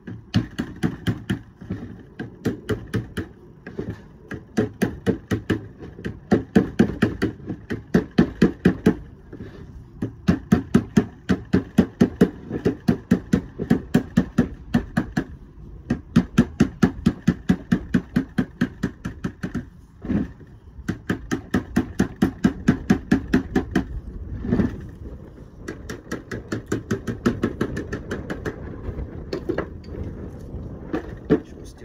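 Plastic bossing mallet striking the edge of a lead sheet to knock over a flange, in runs of quick blows about four a second with brief pauses between runs.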